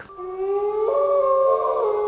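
Wolves howling: long, held howls overlapping at several pitches, stepping up in pitch about a second in and again near the end.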